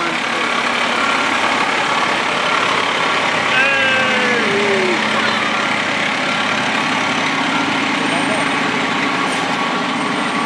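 Fire truck's diesel engine running steadily as the rig backs slowly over a flashlight on the pavement.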